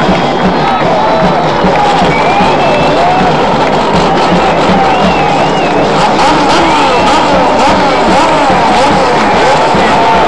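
A crowd of race fans shouting and cheering, loud and steady, with the engines of Dodge Turismo Carretera race cars running on the track beneath the voices.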